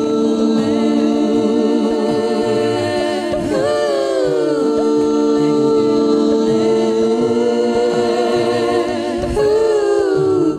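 Live-looped a cappella singing: one woman's voice layered into held, choir-like chord harmonies over a repeating low vocal pattern. A live vocal line slides up and back down about three and a half seconds in.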